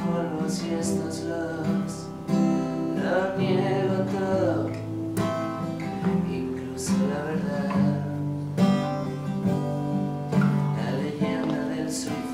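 Takamine acoustic guitar played live, chords ringing and changing, with a man's voice singing along in places.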